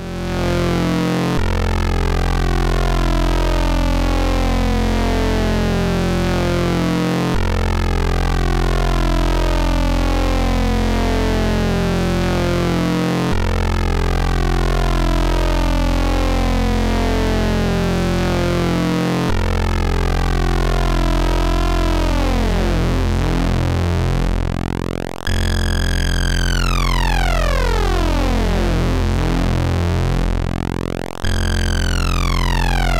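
Eurorack modular synthesizer patch built around a Rossum Trident complex oscillator, giving a dense, many-overtoned tone whose overtones sweep downward and restart about every six seconds. In the last third a bright tone glides steeply downward twice.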